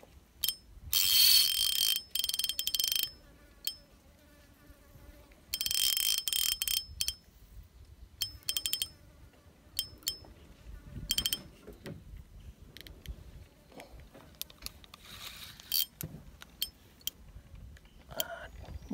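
High-pitched insect buzzing in repeated bursts of one to two seconds, with short clicks between them.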